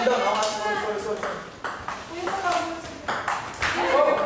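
Table tennis rally: the celluloid ball clicking sharply back and forth off the paddles and table, several clicks a second, with people's voices over it.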